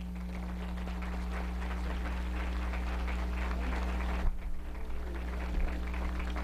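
Audience applauding, a steady mass of clapping over a constant low electrical hum.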